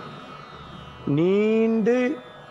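A man's voice draws out one long word in a chanting, recitation-like delivery, starting about a second in, over steady background music.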